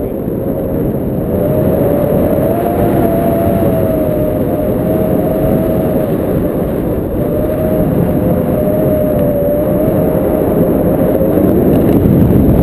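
Wind rushing over the action camera's microphone in paraglider flight, a loud, steady rumble, with a faint tone under it that wavers slightly in pitch.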